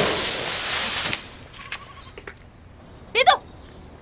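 A crash of straw and debris, loud at the onset and dying away over about a second. About three seconds in comes a single short vocal cry.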